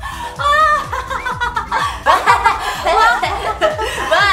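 Excited laughing and shrieking over background music with a steady beat.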